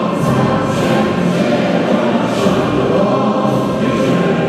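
Choral singing with instrumental accompaniment, steady throughout.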